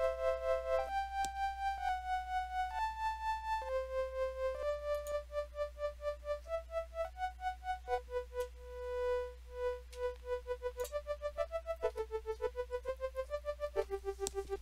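Bitwig Studio's Organ synth playing single notes in a slow melody. Each note pulses in level at about four pulses a second from an LFO. Near the end the pulsing speeds up as the LFO rate is raised to about 6.7 Hz.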